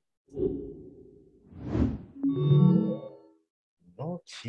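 Quizizz quiz-game sound effects: a low whoosh about a third of a second in, a swelling swoosh peaking just before two seconds, then a brief ringing chord as the leaderboard comes up.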